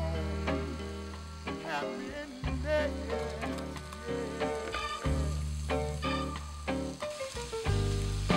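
Shrimp and bell pepper strips sizzling as they sauté in a frying pan, with music playing over it.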